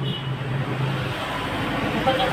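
Steady low hum and rumble of background noise, with no clear single event.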